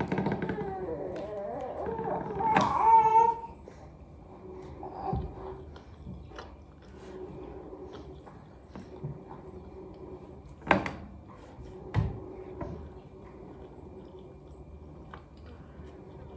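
A baby babbling and squealing for the first few seconds, loudest with a high squeal about three seconds in. After that it is quieter, with a few sharp knocks about 11 and 12 seconds in.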